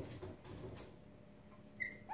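Faint scuffling of small puppies playing on a tile floor, in a quiet room, with one brief high squeak near the end.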